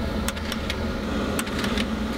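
Disc recorder opening its tray: a steady mechanical hum with several sharp clicks spread through it.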